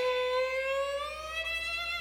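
Violin holding one long bowed note that slides slowly upward in pitch, with a light vibrato.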